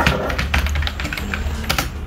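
Computer keyboard being typed on: a quick, irregular run of key clicks as a word is typed, over a steady low hum.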